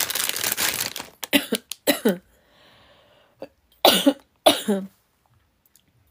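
A woman coughing several times, the loudest two coughs close together about four seconds in. It opens with about a second of crinkling, like plastic packaging being handled.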